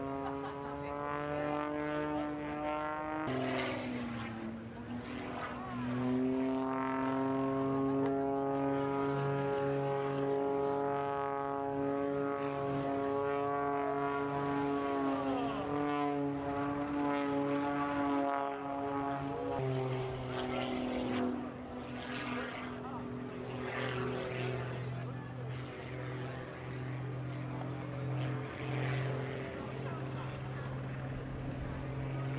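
Aerobatic propeller airplane's piston engine and propeller during a display routine, the note stepping and gliding up and down as power changes: a drop about three seconds in, a rise at six, a downward glide around fifteen and another drop near twenty. A steady low hum runs underneath.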